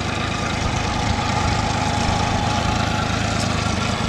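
Honda 30 hp four-stroke outboard, a three-cylinder, purring steadily at low revs.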